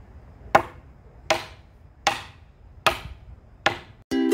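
Hammer striking the top of an upright post, five sharp blows at an even pace of a little under one a second, driving the post down into the ground.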